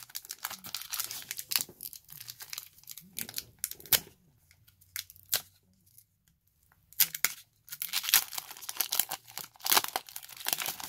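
Foil Pokémon booster pack wrapper crinkling and being torn open by hand. The handling goes nearly quiet for a couple of seconds midway, then comes a dense burst of crinkling and tearing over the last few seconds as the pack opens.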